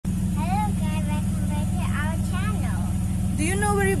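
A steady low engine rumble with an even pulse, like an engine idling close by, runs throughout. Voices are heard over it, the clearest near the end.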